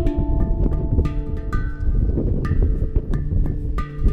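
Background music on a hang drum: struck, ringing metal notes at several pitches, overlapping in a slow melodic pattern.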